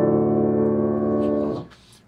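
Grand piano: a D minor chord (D, F, A) played with both hands, held and ringing, then released about a second and a half in so that it stops quickly.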